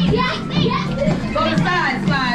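A room full of children talking and shouting at once over music with a steady low bass.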